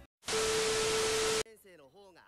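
A burst of loud static hiss with a steady beep tone over it, lasting about a second and cutting off suddenly: a video-editing transition effect.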